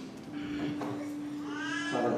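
A single sustained keyboard note comes in just after the start and holds steady. Near the end comes a short, high, gliding voice-like cry that rises and falls in pitch.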